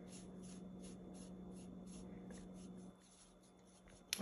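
A paintbrush swishing faintly in quick strokes across a styrofoam plate, stirring wet colour, about three to four strokes a second. The sound cuts out to silence about three seconds in.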